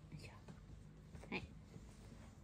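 Quiet room with a low steady hum and a few faint breathy, whisper-like sounds, the clearest about a second and a half in.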